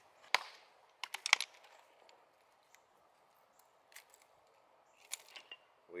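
Sharp clacks and knocks of stone on stone as geodes are tossed and handled on creek gravel: one early, a quick cluster about a second in, and a few more near the end. A faint steady rush of the creek runs beneath.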